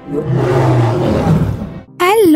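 A lion roaring once: one long, deep roar that swells early and fades away near the end, with film music underneath.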